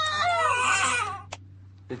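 A woman's strained, wailing cry that wavers up and down in pitch and breaks off just over a second in.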